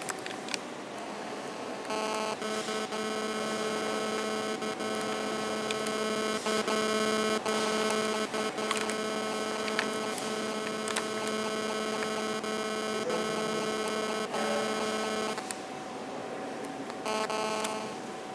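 Steady electrical hum made of several pitched tones with faint ticking through it. It starts about two seconds in, cuts off a couple of seconds before the end, then returns briefly.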